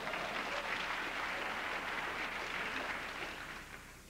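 Live audience applauding, the applause dying away near the end.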